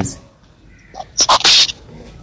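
A short burst of breath noise from a man's mouth and nose: a couple of small clicks, then a brief sharp hiss, like a stifled sneeze or a quick sniff.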